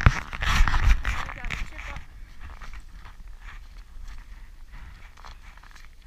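Footsteps crunching through snow, loud in the first two seconds and then fainter.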